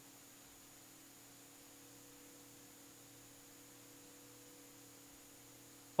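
Faint room tone with a steady low hum and no other events.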